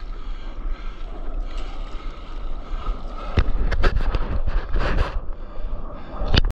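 Wind buffeting the microphone over water lapping around a stand-up paddleboard, then, from a little past halfway, a run of short, loud splashes of the paddle and water against the board.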